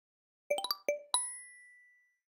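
Subscribe-button sound effect: a quick run of bright chime notes rising in pitch about half a second in, then a single bell-like ding that rings out and fades.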